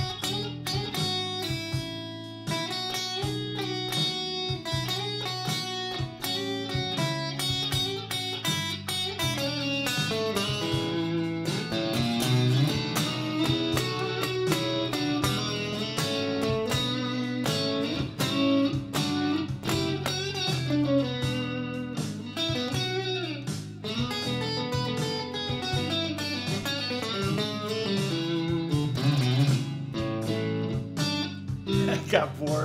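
Squier Stratocaster-style electric guitar playing continuous single-note blues lines over a 12-bar blues in E, drawn from the E, A and B Mixolydian scales. Each note is picked, and the melody moves up and down without pause.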